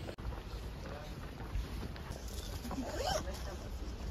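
Outdoor street ambience recorded while walking uphill: footsteps and clothing or handling rustle over a low rumble, with brief faint voices about three seconds in.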